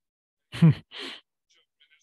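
A man's brief vocal reaction: a short voiced sound falling in pitch, then a breathy exhale, like a sigh or the start of a laugh.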